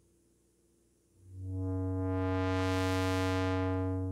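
Sustained synthesizer note through the Tenderfoot SVF-1 state-variable filter with no resonance, its cutoff swept by hand. It is silent at first, comes in about a second in, brightens to a buzzy peak near three seconds in, then darkens again as the cutoff closes.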